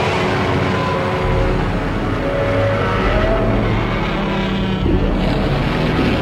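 Godzilla's roaring, growling voice, gliding up and down in pitch, standing in for speech, with a deep rumble beneath from about a second in and music behind.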